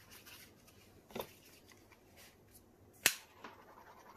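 Quiet handling at a worktable: faint rustling of a paper towel and small taps, with a soft click about a second in and one sharp click about three seconds in, the loudest sound.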